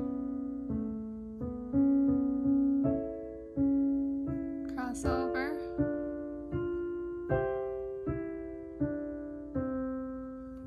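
Kawai piano playing a slow, soft piece in 3/4 time, one new note or chord about every three-quarters of a second, each left to ring. The melody is in the bass, with the upper part played a little softer.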